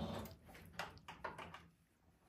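Singer electric sewing machine stitching a hem at slow speed: a faint, quick run of needle clicks that stops about a second and a half in.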